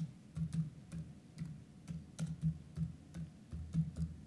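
Typing on a computer keyboard: a string of uneven key clicks, about four a second.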